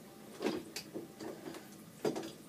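Interior doorknob and latch being turned and worked, giving a few short clicks and rattles, the loudest about half a second in. The door latch is faulty and the door sticks shut.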